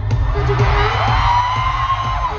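Live K-pop song played loud through a concert sound system, with a heavy, steady bass beat. About a second in, a high drawn-out tone slides up and holds.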